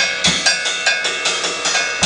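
Broken cymbals struck with sticks in a fast, steady pattern of about five hits a second, each hit a short metallic ring. A couple of heavier drum hits come near the start.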